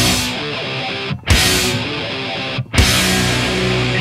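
Hardcore punk song: a distorted electric guitar riff, broken by two short stops, about a second in and near three seconds in.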